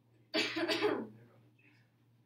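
A person coughing, two coughs in quick succession about a third of a second in, over a faint steady low hum.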